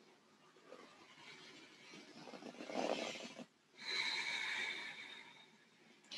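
A woman's deep, audible yoga breathing: a long breath that swells about two seconds in, a brief pause, then a second long, steadier breath with a faint whistling tone.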